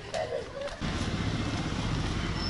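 Motor vehicle noise: a steady low rumble that starts abruptly just under a second in and carries on, after a brief bit of voice at the start.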